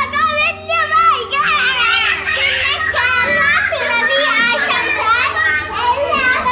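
Several children's high-pitched voices shouting and chattering over one another excitedly as they play, with no pause.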